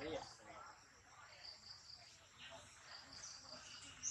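Faint, steady chirring of insects such as crickets, with a short faint call right at the start and a few faint scattered vocal sounds.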